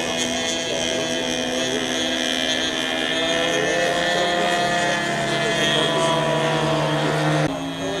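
Radio-controlled model airplane engines droning steadily overhead, their pitch drifting slowly as the planes fly, with an abrupt change in the sound near the end.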